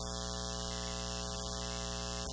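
Steady electrical mains hum, a buzz with many evenly spaced overtones and a layer of hiss.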